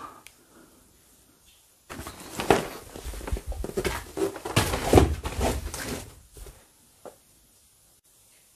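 Handling noise: a few seconds of rustling and knocking as a handheld camera and clothing move about, with a single faint click near the end.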